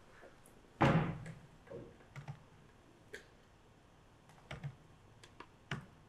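Computer keyboard keys being pressed: scattered, irregular keystrokes, with one louder thump about a second in.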